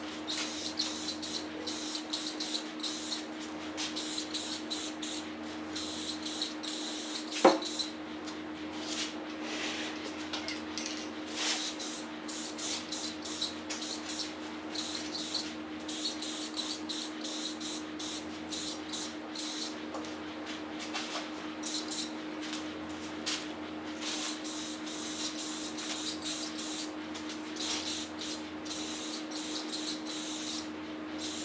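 Aerosol spray-paint can hissing in many short bursts as black paint is sprayed on, with a steady low hum underneath. One sharp knock about a quarter of the way through is the loudest sound.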